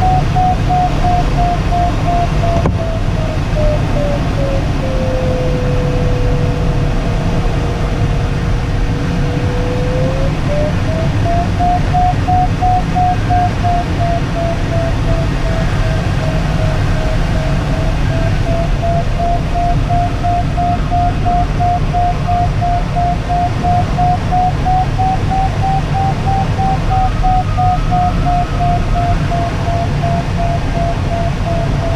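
Glider's electronic variometer beeping at a higher pitch, the climb signal of a glider in lift. About five seconds in it drops to a steady, unbroken lower tone for several seconds, then rises and beeps again. Under it runs a steady rush of air past the closed cockpit canopy.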